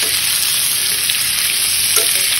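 Gizzards and onions sizzling steadily in hot oil in a steel kadai.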